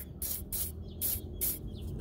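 WD-40 aerosol can sprayed in about four short hissing bursts onto the shaft of an RV air conditioner's fan motor. A steady low hum runs underneath from the motor, which hums without spinning properly because dirt is binding its shaft.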